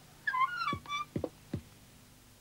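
A high, wavering wail-like sound effect, then three short sounds sliding quickly down in pitch.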